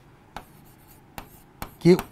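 Chalk writing on a blackboard: a few faint taps and strokes as letters are written.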